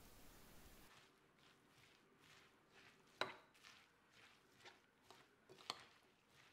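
Near silence with faint brushing strokes and two small clicks, the first about three seconds in and the second near the end: a utensil working through chopped spring onions and tapping a glass bowl as the seasoning is mixed in.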